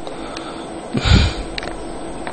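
A single short sniff, a quick breath through the nose, about a second in, over a faint steady background hiss.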